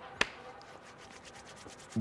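Roulette ball rolling in the wheel with a faint, rapid rattle, and one sharp click about a fifth of a second in.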